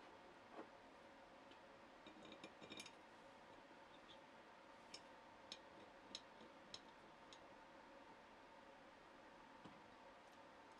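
Faint light metal clicks and taps of a small steel clamp being fitted over a screw onto a clamp packing piece on an angle plate, over near-silent room tone: a few taps around two to three seconds in, then single clicks about every half second for a couple of seconds.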